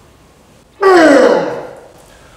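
A man's loud strained groan of effort, about a second in, sliding down in pitch and lasting under a second, as he pushes through a heavy curl rep.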